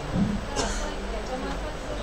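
Faint speech from a woman talking into a handheld microphone, heard through the hall's sound system, with a short louder burst near the start and a hiss about half a second in. A steady low hum runs underneath.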